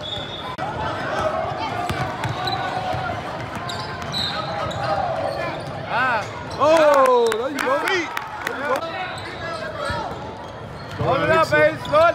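Basketball game in a gym: a ball bouncing on the hardwood court, sneakers squeaking, and shouts and murmur from players and spectators, all echoing in the large hall.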